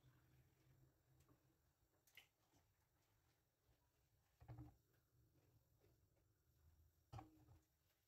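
Near silence: faint room tone with three faint, brief knocks spread a few seconds apart.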